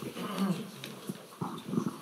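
Faint, indistinct voices away from the microphone, with a few light clicks, as an audience member gets ready to ask a question.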